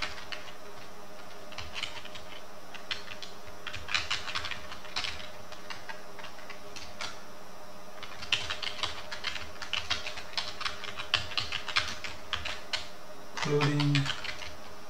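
Computer keyboard being typed on: two runs of rapid keystrokes with a lull of about three seconds between them, over a steady background hum.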